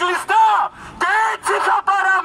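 Protesters chanting a political slogan in loud, rhythmic shouted syllables.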